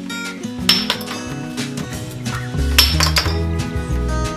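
Two ringing metallic clinks of metal struck on steel, a little under a second in and again near three seconds, over background music; a bass line comes in partway through.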